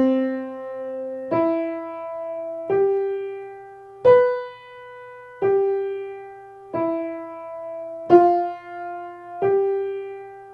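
Piano playing a slow single-line melody in C major, one note at a time, a new note struck about every second and a half and left to ring: the melody of an ear-training dictation exercise.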